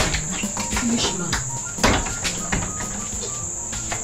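Crickets chirping in a steady high-pitched trill, with a few light knocks and a louder thump about two seconds in.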